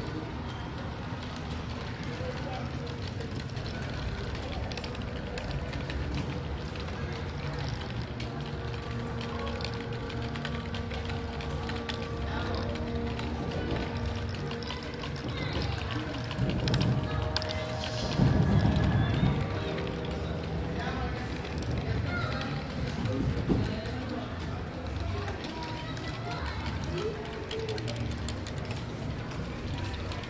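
Sound installation playing held electronic tones and drones through cone loudspeakers, over an indistinct murmur of visitors' voices. About halfway through come a few louder low rumbling swells.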